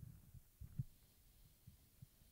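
Near silence in a pause in speech, broken by a few faint, dull low thumps, the loudest a little under a second in.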